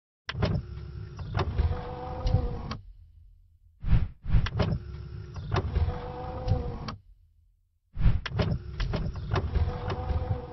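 A mechanical sliding and whirring sound effect with clicks and a steady hum, like a motorized panel moving, played as part of an animated outro. It comes three times, each lasting about three seconds, with a brief pause between.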